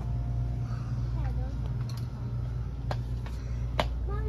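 Steady low hum of a shop's background noise, with a faint voice about a second in and two sharp clicks late on, the second louder.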